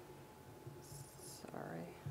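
Faint whispering in a quiet room: a soft hissed sound about a second in, then a brief murmured word near the end.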